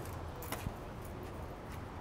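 Quiet background with a steady low hum and two brief faint clicks about half a second in.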